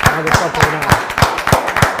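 Hands clapping in a steady rhythm, about three claps a second, with voices underneath.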